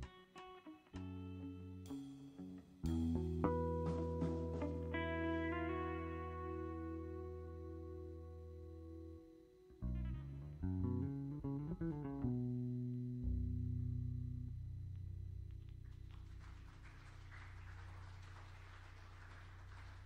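Electric guitar with bass playing the closing notes of a jazz tune, slow chords and single notes left to ring and die away over a long held low note. Applause starts about four seconds before the end and fades out.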